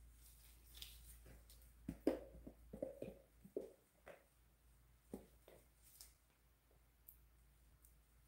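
Near silence with a few faint clicks and soft knocks, mostly between two and four seconds in. These are handling sounds from the plastic mixing cup and silicone molds as epoxy resin is slowly poured.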